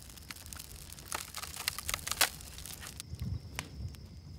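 Wood campfire of dry sticks and brush crackling, with many irregular sharp snaps.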